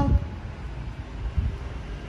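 Low, steady rumbling handling noise from a handheld phone microphone being carried while walking, over showroom room tone, with a soft thump about a second and a half in.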